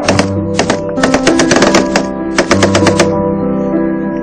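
Bursts of automatic gunfire, rapid shot strings about a second in and again at about two and a half seconds, over background music with sustained notes.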